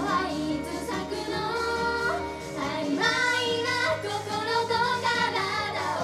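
Japanese idol group of young women singing a pop song live into handheld microphones over backing music, played loud through stage speakers.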